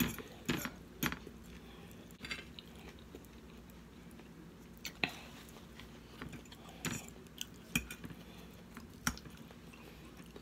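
Close-up chewing of a mouthful of salad, with a metal fork clicking against the plate about eight times at uneven intervals as the next bite is gathered.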